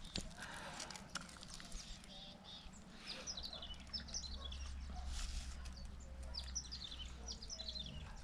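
Faint outdoor ambience: small birds chirping in short high calls from about three seconds in, over a low steady rumble, with a few light clicks.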